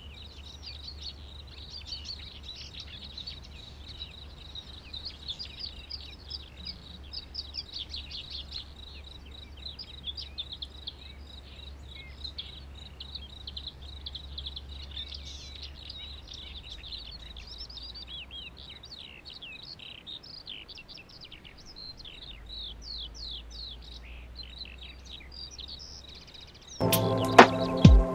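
Small birds chirping: a busy run of short, quick, falling chirps throughout, with a low steady hum underneath that drops out for a few seconds in the second half.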